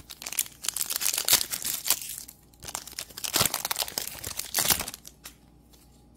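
Cellophane wrapper of a trading-card cello pack crinkling and tearing as it is opened by hand: an irregular run of sharp crackles with a few louder bursts, stopping about five seconds in.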